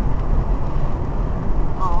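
Steady road and wind noise inside a moving car at highway speed, a low rumble that does not change.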